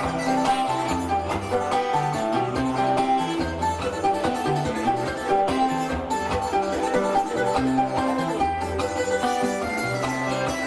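Cuban punto guajiro played on guitars and other plucked strings: a steady instrumental passage with a repeating bass line, the interlude between sung décimas.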